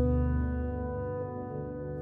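A low chord on the Midnight Grand sampled grand piano, struck just before and ringing out as it fades, with a dull, deadened tone.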